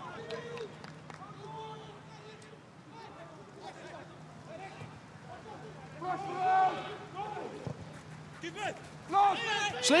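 Football pitch ambience: players' voices shouting on the field over a steady low hum, with a louder burst of calls about six seconds in.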